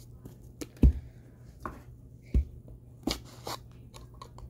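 A few separate knocks and clicks of small objects and plastic containers being handled and set down, with two firmer thumps, about a second in and again about halfway.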